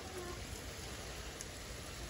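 Garden hose spray nozzle on a shower setting, hissing steadily as the water patters onto leaves, potting soil and the pot.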